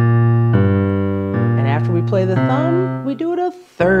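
Digital piano playing single low left-hand notes one after another, a blues walking-bass pattern stepping between G and B-flat on its way back to C, each note held until the next. A woman's voice speaks over the last notes in the second half.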